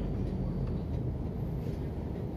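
Siemens ULF A1 low-floor tram running slowly on street track, heard from inside the car as a steady low rumble.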